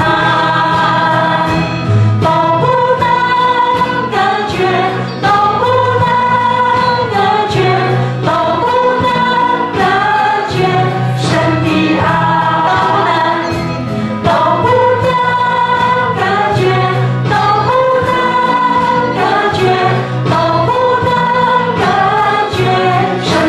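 A worship band and a group of voices singing a praise song together, with sustained sung notes over bass and a steady beat.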